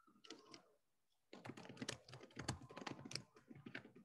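Faint typing on a computer keyboard: a short patter of key clicks, then a quicker, denser run of keystrokes from about a second and a half in.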